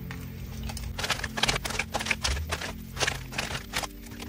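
Tarot cards being handled: from about a second in, a quick, irregular run of sharp card flicks and taps, over soft, steady background music.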